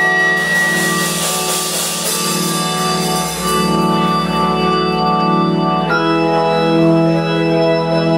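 Live band music: sustained organ chords played on an electric stage keyboard, with a chord change about six seconds in.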